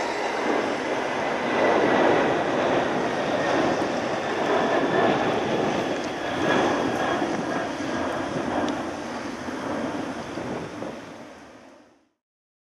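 Jet noise from a climbing four-engined Boeing 747 freighter just after takeoff, a steady rushing sound that fades out over the last couple of seconds.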